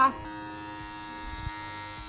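Cordless electric hair clippers with the guard removed, running with a steady buzz while edging a child's hairline.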